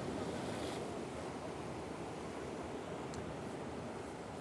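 Ocean surf breaking and washing up the shore, a steady rush of noise that eases slightly toward the end.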